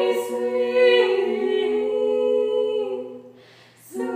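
Three women's voices singing a cappella in close harmony, holding long notes. The chord fades out about three and a half seconds in for a breath, and the voices come back in together at the end.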